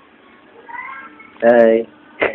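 A short, loud drawn-out vocal call lasting under half a second, about one and a half seconds in, after a fainter call just before it.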